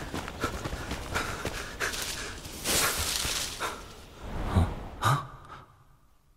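Soundtrack effects of hurried footsteps and heavy breathing, with a rushing swell about halfway through and two sharper sounds near the end before it fades.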